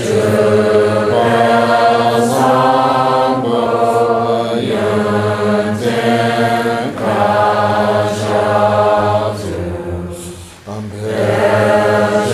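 A group of voices chanting a Buddhist prayer together in unison, in long held phrases that step a little in pitch, with a short break for breath about ten and a half seconds in.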